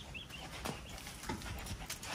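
Horse's hooves thudding softly on a sand arena surface, a few dull beats that come more often toward the end.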